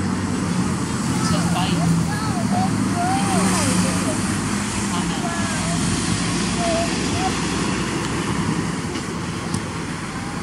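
Steady low drone of an idling engine, with faint short chirps scattered over it.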